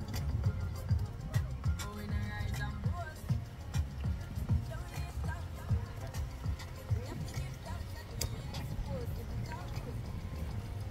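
Wind buffeting the phone's microphone in uneven low rumbles, with faint voices and music beneath it.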